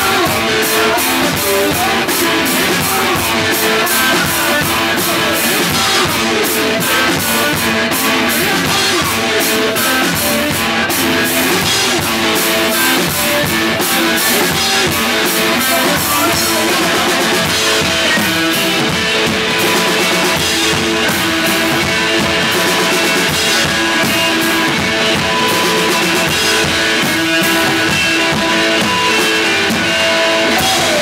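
Two-piece rock band playing live: electric guitar and drum kit in a loud, steady groove, with no vocals.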